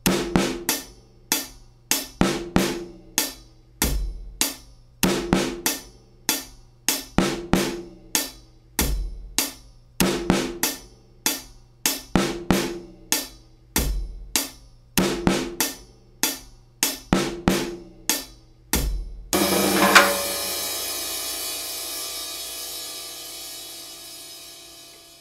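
Taye GoKit drum kit with UFIP hi-hats playing a steady beat: hi-hat eighth notes, bass drum, and a cloth-damped snare syncopated a sixteenth after beat 2 and a sixteenth before beat 4. A little after three-quarters of the way through it ends on a cymbal crash that rings and slowly fades.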